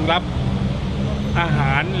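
Road traffic with a steady low engine hum, heard under a man's speech.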